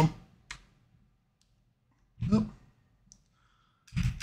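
A single sharp click about half a second in, with a much fainter tick near the end; otherwise quiet room tone.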